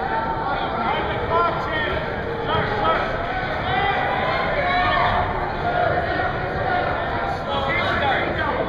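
Mostly speech: voices talking and calling out in a gym, with no other sound standing out.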